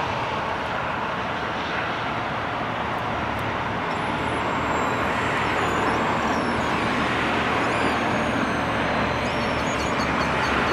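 Lännen 8600C backhoe loader's diesel engine running steadily while its backhoe arm digs, together with steady road traffic noise.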